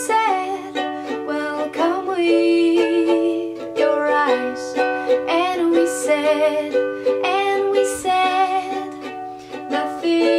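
Woman singing a slow melody over her own strummed ukulele chords.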